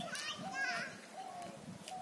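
High-pitched children's voices calling and chattering, in short phrases with no clear words.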